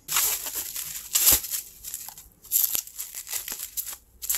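Bubble-wrap packaging being handled and pulled open by hand, the plastic crinkling in several irregular bursts, the loudest about a second in.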